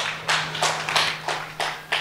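Crowd clapping in unison, a steady beat of about three claps a second.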